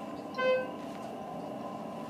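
A single short electronic beep about half a second in, typical of an elevator's floor chime, over the steady hum of the car.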